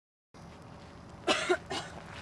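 A person coughing twice in quick succession, over faint background hiss that starts after a moment of silence.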